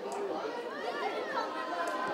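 Indistinct chatter of several overlapping voices at a football pitch, with higher calls rising and falling about halfway through.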